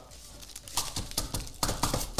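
Straws being unwrapped: wrappers crinkling and tearing, with a run of small clicks and taps starting about a second in.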